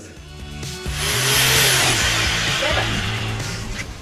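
Hammer drill boring through a masonry wall, starting about a second in and running steadily for nearly three seconds before dying away, over background music.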